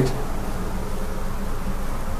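A steady low buzzing hum, unchanging through the pause in speech.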